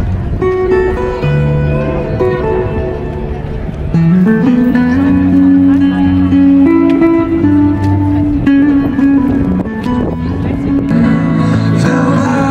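Amplified acoustic guitar played live, plucked notes at first, then from about four seconds in a louder melody of long held notes over the guitar.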